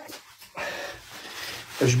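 A person's heavy breath close to a microphone: a breathy hiss lasting about a second.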